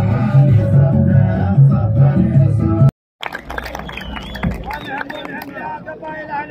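Loud music with a heavy, repeating bass beat that cuts off abruptly about three seconds in. After a brief silence come quieter mixed voices with a few sharp clicks.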